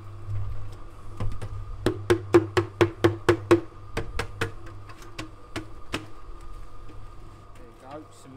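Metal bucket knocked repeatedly against the mouth of a cement mixer drum to shake out its load. A quick run of about eight knocks, about four a second, comes around two seconds in, then a few more spaced out, over the mixer's steady hum.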